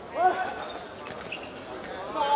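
A brief shout from a man on the court about a quarter of a second in, then quieter sounds of play on the hard outdoor surface.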